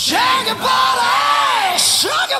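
1980s melodic hard rock / heavy metal song with a male lead vocal belting long, drawn-out lines that bend up and down in pitch.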